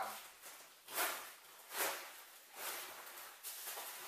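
A fabric rucksack and its pouches being handled and rummaged through, four short rustling, scuffing bursts about a second apart.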